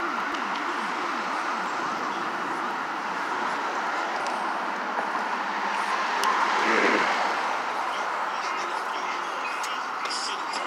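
Steady city street traffic noise from cars passing on the road, swelling briefly as a vehicle goes by about seven seconds in.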